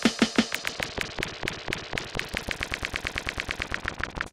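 Electronic drum-machine beat broken up by Logic Pro's Tape Delay plugin into a rhythmic stutter: a rapid, even run of short repeated hits, about eight to ten a second, in place of the full beat.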